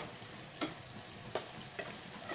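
Sliced beef and onions sizzling in a nonstick frying pan as a spatula stirs them, with four sharp clacks of the spatula against the pan.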